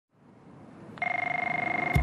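A telephone ringing: one electronic trilling ring, two steady tones pulsing very rapidly, starting about a second in after a faint rising hiss.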